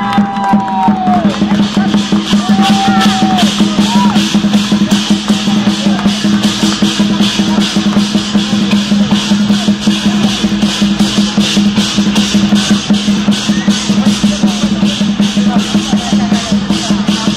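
Live dragon dance percussion: drums and cymbals beating a steady, fast rhythm of about four strokes a second, with a steady low hum under the beat.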